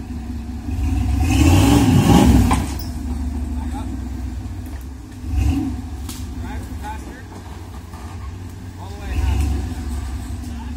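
Lifted Chevy S-10 rock crawler's engine running under load as the truck climbs a rock ledge. It revs hard for about two seconds beginning about a second in, then gives two short revs, one midway and one near the end.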